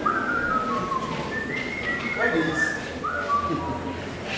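A person whistling a string of short notes, several of them sliding up at the start and then held briefly.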